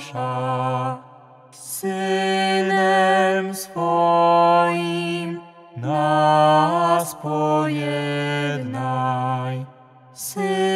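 A man and a woman singing a slow chanted prayer melody in long held notes, with short breaks between phrases.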